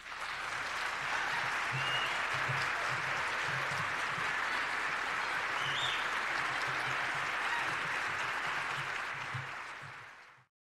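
Audience applauding after a barbershop quartet's song, starting suddenly as the singing ends and staying steady, tapering slightly near the end.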